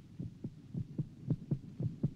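A heartbeat sound effect: low thuds beating fast, about two a second, in lub-dub pairs. It stands for a soldier's racing heart during a panic attack.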